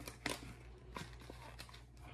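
Faint crinkles and taps of a thick 7 mil mylar bag being handled: a few separate short rustles over a low steady hum.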